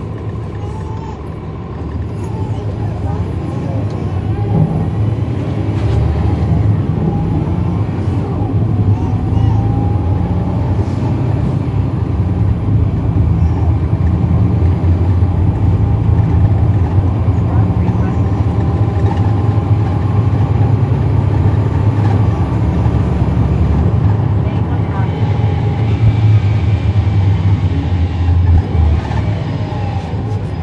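Cummins ISL9 diesel engine of a 2010 NABI 40-SFW transit bus, heard from the rear seats while working under load. It grows louder about two seconds in, runs hard and steady with a faint whine gliding up and down, and eases off near the end.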